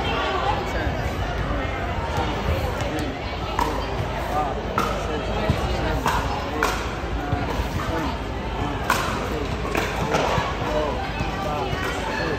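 Several people talking indistinctly in the background, with scattered sharp knocks every second or two.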